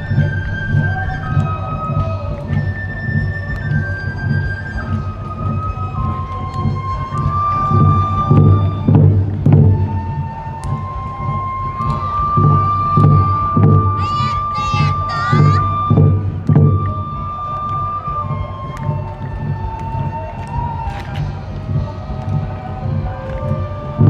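Awa odori festival music: drums beating a steady, driving rhythm under a high melody of stepped, held notes from a bamboo flute, with one long held note a little past the middle. A short burst of high, wavering calls rises over the music at about the same point.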